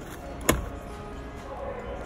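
A single sharp plastic-and-metal click from the Toyota 4Runner's third-row seat mechanism about half a second in, as a seat part is folded or latched into place.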